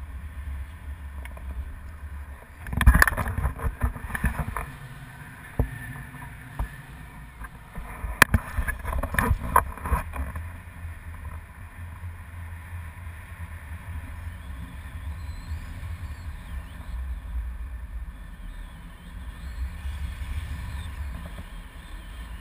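Wind buffeting the microphone of a camera carried in paragliding flight: a steady low rumble, broken twice by stretches of louder knocks and rustling, about three seconds in and again around eight to ten seconds.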